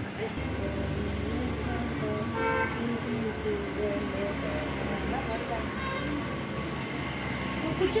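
Indistinct voices talking in the background over a steady low rumble of outdoor noise, with a brief horn-like toot about two and a half seconds in.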